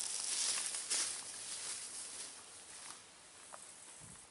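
Footsteps crunching through dry grass on a stony path, with some rustling, growing steadily fainter as the walker moves away.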